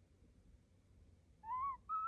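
European starling giving two short whistled notes about a second and a half in: the first rises slightly in pitch, the second is steadier and a little higher.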